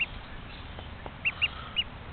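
One-week-old duckling peeping: four short, high peeps, one at the start and three in quick succession in the second half.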